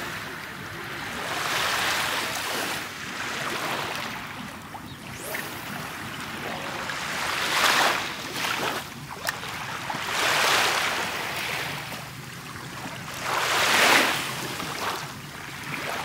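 Small sea waves washing up on a pebble beach, the surf swelling and fading in repeated surges every few seconds.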